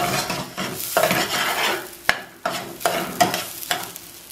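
Rinsed quinoa grains toasting in a little oil in a small saucepan, stirred round in repeated scraping strokes, about two a second, over a light sizzle as the moisture cooks off the grains. One sharper tap comes about halfway through.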